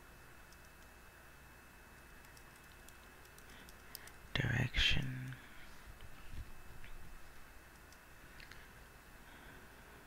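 Soft computer-keyboard typing, a few scattered keystrokes. About halfway through there is a short vocal sound lasting about a second, louder than the typing.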